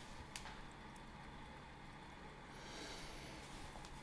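Faint rustling of a cotton piqué polo shirt being handled, with a small click just after the start and slightly louder rustling a little past the middle.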